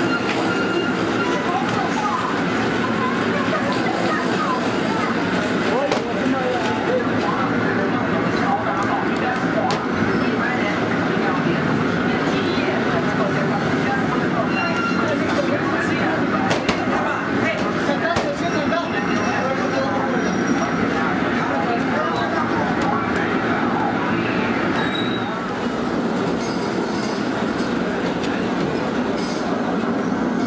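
Electric noodle-rolling machine running with a steady rumble and hum, with several people talking over it.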